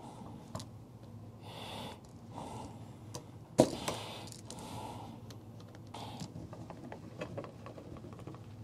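Small metal clicks and scrapes of a slotted screwdriver prying at the wire-release slots of a wall outlet's push-in connectors, where the wires are stuck fast. There is one sharp click about three and a half seconds in and a run of small ticks near the end, with hard breathing from the effort.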